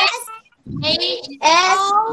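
Young children reading aloud together in drawn-out, sing-song voices, repeating a body-part word and its spelling after the teacher. Three stretched phrases with short pauses between them.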